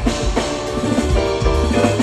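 Four-piece rock band playing live, with drum kit, electric guitar, bass and keyboards together and busy kick and snare drumming; a strong drum hit lands right at the start. It is an audience recording on a phone, so the band comes through the arena's PA with the hall's reverberation.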